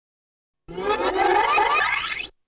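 A short intro sound-effect sting: a warbling pitched sound made of several tones, starting about two thirds of a second in and gliding upward in pitch near the end.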